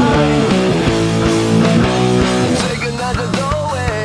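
Electric guitar playing a heavy stoner-rock riff over a full-band backing track with drums; the band thins out about three seconds in.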